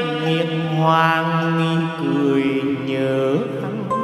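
Slow background music with a chanted voice holding long notes, sliding up to a new note near the end.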